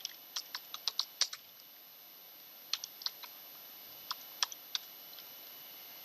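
Keystrokes on a computer keyboard, typed in three short runs with pauses between them.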